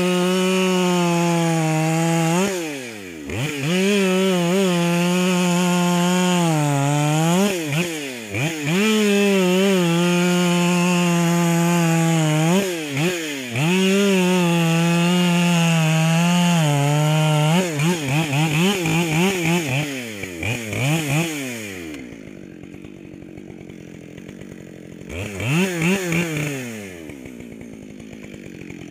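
Husqvarna 572 XP two-stroke chainsaw with a modified muffler cutting through a gum log at full throttle in four long cuts, the revs dropping briefly between them. After about 18 seconds it is revved in several quick blips, then settles to a quieter idle, with one more rev near the end.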